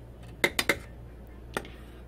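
Kitchenware clinking as sauce is served from a pot onto noodles in a ceramic bowl: three quick clinks about half a second in and one more shortly before the end, over a low steady hum.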